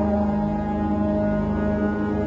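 Sampled ancient Roman war horns from the Maleventum Pompeii library, several layered horns holding a steady, low, foghorn-like drone.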